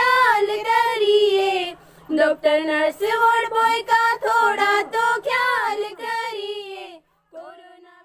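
Girls singing a Hindi song together in unison, unaccompanied. There is a short break about two seconds in, and the singing ends about a second before the end with one short trailing phrase.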